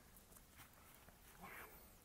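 Near silence, with faint sounds of a knife cutting through the skin of a dragon fruit, slightly louder about one and a half seconds in.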